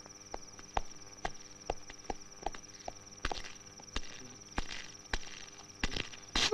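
Footsteps, about two a second, walking across outdoor ground, over the steady high chirping of crickets.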